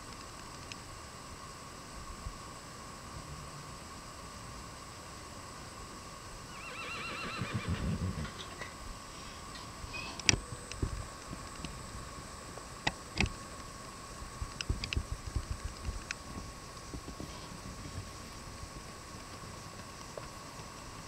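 A horse whinnies once, about seven seconds in, followed by a scatter of sharp knocks and hoof clops over the next several seconds.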